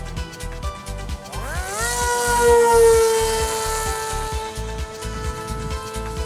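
Background music with a steady beat, over which an RC flying wing's electric motor and propeller whine rises quickly in pitch about a second and a half in, is loudest around three seconds in, then holds and sinks slowly as it fades back under the music.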